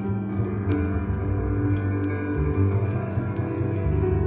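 Upright double bass played pizzicato, plucked low notes moving through a slow, solemn piece over steady held accompanying tones.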